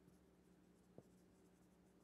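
Near silence: faint sound of a marker writing on a whiteboard over a low steady hum, with one faint tick about a second in.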